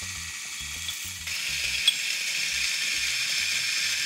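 Zerno Z1 coffee grinder running and grinding beans, a steady hissing grind with a low motor rumble underneath that gets louder about a second in. It is not a terribly loud grinder.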